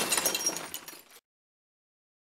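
Tail of a crash sound effect, clinking and rattling debris like breaking glass, fading out about a second in and then cutting to silence.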